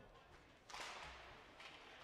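Faint rink sound of hockey skates scraping the ice as the faceoff is taken: a short hiss that starts suddenly just under a second in and fades away.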